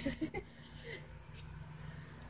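A brief trailing laugh in the first half second, then quiet yard background with a faint steady low hum.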